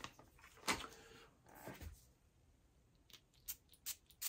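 Faint handling sounds of a perfume spray bottle and a paper tester strip being picked up: a short rustle a little under a second in and another around two seconds in, then a few short sharp clicks near the end.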